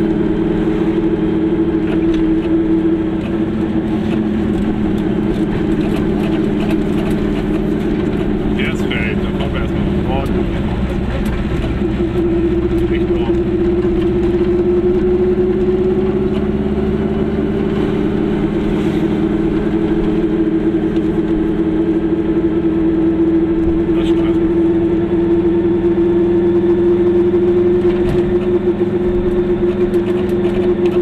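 Car engine droning steadily, heard from inside the cabin while driving. The hum wavers about a third of the way in, then rises slowly in pitch through the second half.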